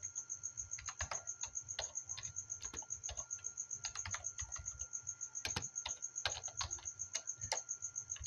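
Computer keyboard typing: irregular runs of keystrokes, with a steady high-pitched whine underneath.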